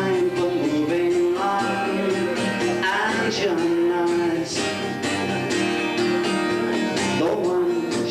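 Live acoustic guitar strumming with a man singing long, drawn-out notes into the microphone.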